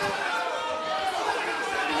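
Several voices talking over one another, an indistinct chatter of people speaking at once.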